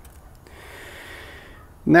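A man breathing in: a soft, airy hiss of just over a second that stops just before he speaks.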